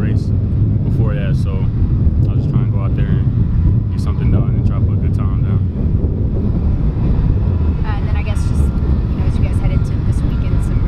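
A young man speaking in short phrases, with a pause of a couple of seconds past the middle, over a steady low rumble that carries most of the loudness.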